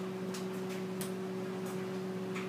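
Knife cutting through a block of cheese on a cutting board, the blade giving a few faint ticks as it meets the board, over a steady low hum.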